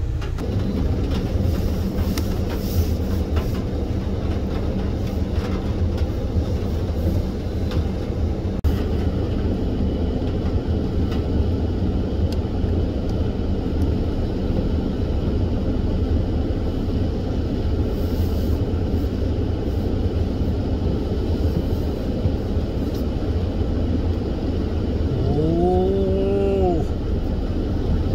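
A vehicle fording a rain-swollen mountain stream: the engine runs and the tyres rumble under a steady rush of floodwater. Near the end comes a short pitched sound that rises and then falls.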